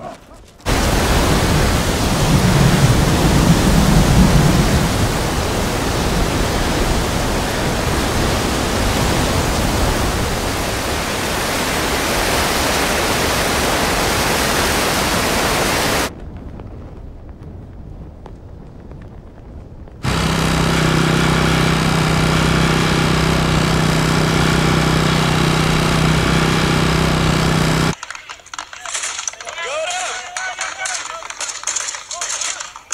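Strong wind rushing through trees, a loud steady rush that starts suddenly and cuts off after about fifteen seconds. After a few quieter seconds, a steady low pitched hum with a drone above it runs for about eight seconds, then stops abruptly.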